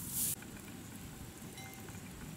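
A swish of dry rice straw being flung with a long-handled rake, cut off abruptly about a third of a second in. After it comes a faint, steady outdoor background with a few faint high tones.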